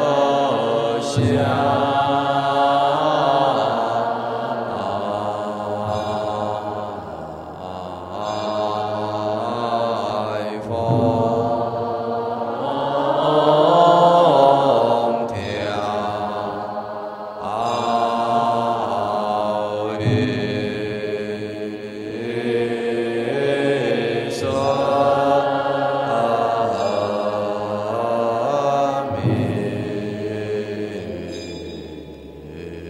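A Buddhist monastic assembly chanting a verse of the morning liturgy in unison, each syllable drawn out over a slow, rising and falling melody. A few sharp strikes sound among the voices.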